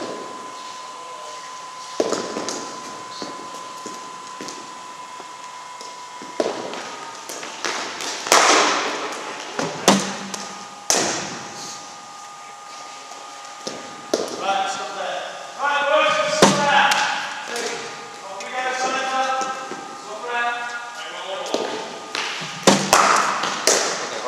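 Cricket balls knocking off a bat and landing in an indoor net hall: about six sharp knocks at irregular intervals, echoing in the large room. Voices talk in the background, and a faint steady tone runs through the first few seconds.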